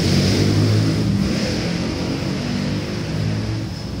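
A steady low mechanical rumble with a hiss, holding level and easing slightly toward the end.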